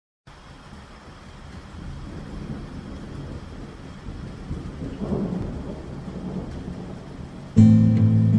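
Rain and rolling thunder growing louder, then an acoustic guitar chord strummed near the end and left ringing.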